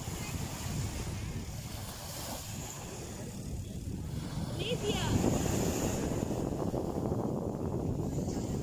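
Small waves breaking and washing up onto a sandy beach, with wind rumbling on the microphone. The noise swells a little about five seconds in.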